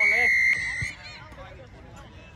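Referee's whistle blown in one short blast of about half a second, a steady high tone that trails off just under a second in, over players' voices.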